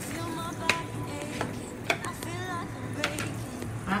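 Butter melting and sizzling gently in a nonstick frying pan over a gas flame, with a few sharp clicks.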